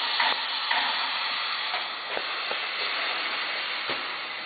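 Steady hiss of compressed air from a uPVC window welding machine's pneumatic clamps and cylinders, with a few faint clicks in the second half.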